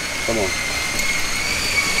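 Water pouring from a pipe into a pond, a steady splashing hiss, over a steady high-pitched mechanical whine.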